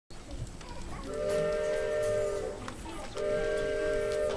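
Two long blasts of a steamboat-style chime whistle, each a chord of several steady notes sounded together. The first lasts about a second and a half; the second starts about three seconds in and is still sounding at the end.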